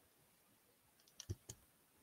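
A quick cluster of three or four small clicks and knocks about a second in, from handling at close range, over near silence.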